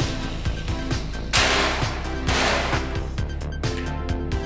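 Background music with a steady beat, broken by two short bursts of loud hissing noise about a second and a half and two and a half seconds in.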